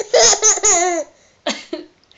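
A baby laughing: a run of high, wavering laugh pulses for about a second, then one short laugh about a second and a half in.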